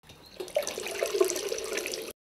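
Water running from a tap and splashing in a bathroom sink, as when washing the face. It starts faint, gets louder about half a second in, and cuts off suddenly at the end.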